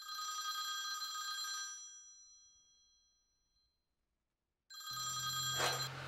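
Landline telephone ringing twice: a ring of about two seconds that fades away, a pause of a second and a half, then a second ring starting near the end.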